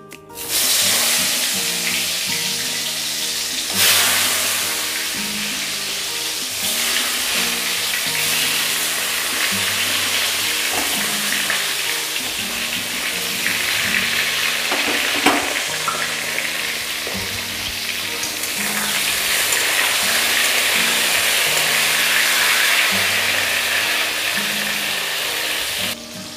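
Whole pointed gourds (potol) sizzling as they fry in hot oil in a kadai. The sizzle starts suddenly about half a second in, as they go into the oil, over background music.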